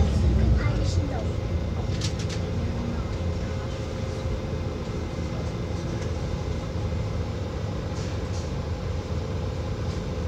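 Steady low engine rumble with a constant hum running under it. The rumble is louder in the first second, then settles to an even level.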